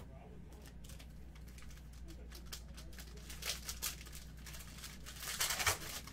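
Plastic card-pack wrapper crinkling and tearing as it is pulled open around a stack of trading cards. The crinkling comes in two louder bursts, about three and a half and five and a half seconds in, after faint clicks of cards being handled.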